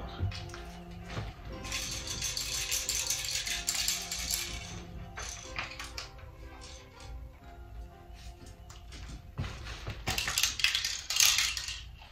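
Background music, with two spells of high rattling, from about two to five seconds in and again near the end, as of loose plastic BBs being shaken about inside a toy Draco-style BB gun. The BBs have fallen loose inside the gun instead of feeding.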